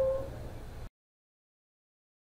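Faint steady background hum and hiss that cuts off abruptly about a second in, leaving dead silence.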